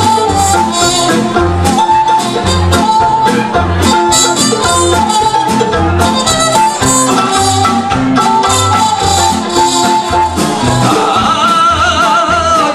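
Small acoustic band playing an instrumental passage of an old Italian song: trumpet carrying the melody over strummed classical guitar, cello bass and mandolin, with a steady bouncing beat.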